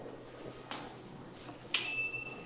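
Quiet room tone in a pause, broken by a faint click and then, near the end, a sharper click followed by a brief high ringing tone.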